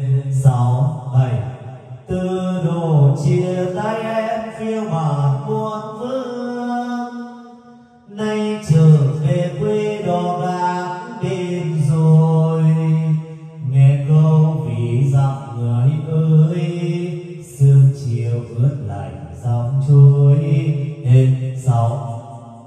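A voice singing a slow song in long, held phrases into a Baiervires BS-780 wireless karaoke microphone, heard loud through the sound system as a microphone test. The phrases break briefly about two seconds in and again about eight seconds in.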